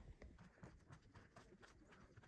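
Faint footsteps on stone paths, a quick irregular patter of light clicks as someone walks with the camera.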